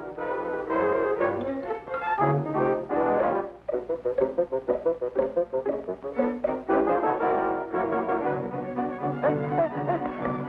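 Orchestral cartoon score with brass in the lead, playing lively passages that break into quick short notes in the middle.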